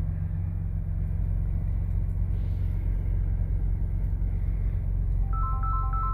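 A 2018 Ford Raptor's 3.5-litre twin-turbo V6 idling steadily, heard from inside the cab. About five seconds in, a short run of electronic chime tones starts over it.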